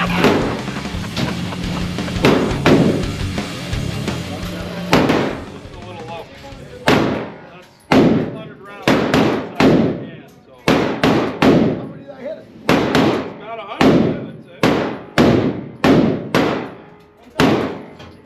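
Hearty laughter, then from about five seconds in a string of single gunshots from neighbouring lanes at irregular intervals, one or two a second, each echoing off the walls of the indoor range.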